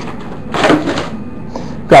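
Rustling and light scraping of trading cards and torn foil pack wrappers being handled on a tabletop, in two short patches.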